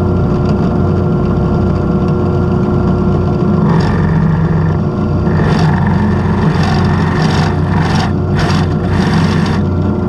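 Drill press running steadily, with its bit cutting into a small 3D-printer extruder part to open a hole for a bushing. From about four seconds in a hiss of cutting noise joins the motor hum, and near the end it comes and goes in several short bursts.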